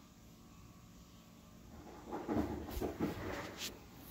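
Quiet room tone for about two seconds, then soft irregular rustling and handling noise with a couple of light knocks as a gloved hand picks up a small piece of paper.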